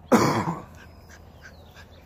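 A single loud cough close to the microphone, about a tenth of a second in and over within about half a second.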